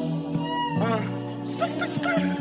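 Hip-hop track between rap lines: a held synth chord over a bass line, with a short vocal 'uh' about a second in and a few quick gliding cries over it.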